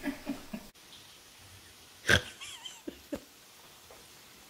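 A man's short chuckling laugh, then a single sharp knock about two seconds in followed by a couple of faint clicks.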